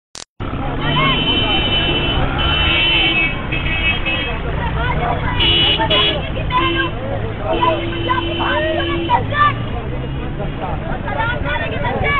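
A crowd of men talking and shouting over one another in street traffic, with several high-pitched vehicle horn toots and one longer, lower horn note about halfway through.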